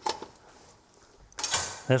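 A faint click, then a short, loud clatter of metal kitchenware at a stockpot about one and a half seconds in, as a cooked lobster is lifted out of the pot.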